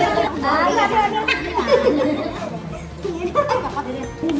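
Overlapping chatter of several people talking at once, with no one voice standing out.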